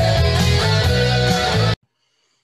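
1970s rock music with electric guitar and a steady beat, cutting off suddenly near the end.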